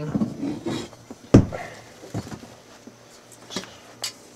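Objects knocking about as a metal helmet is pulled down from a high shelf: one sharp knock about a second and a half in, then a few lighter knocks and bumps.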